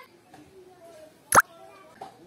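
A single short, sharp pop with a quick falling pitch, a little over a second in, over faint voices in the background.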